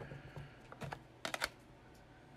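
Hard plastic PSA graded-card slabs clicking against each other as they are flipped and shuffled in the hands: a few light clicks, with a quick cluster of them a little past the middle.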